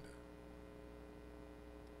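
Near silence in a pause of speech, with only a faint, steady electrical hum.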